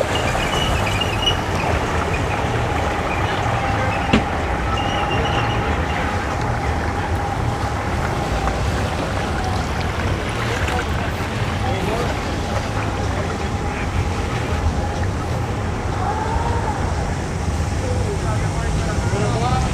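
Twin 225 outboard motors idling as a center-console boat moves off at low speed, a steady low rumble, with people talking in the background.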